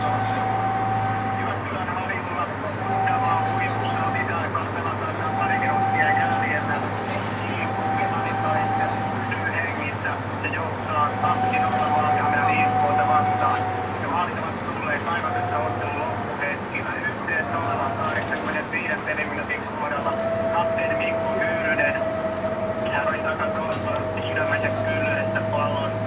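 Inside a moving bus: a steady low engine drone with a whining tone that comes and goes in stretches of a second or two and drops slightly in pitch near the end, under indistinct background speech.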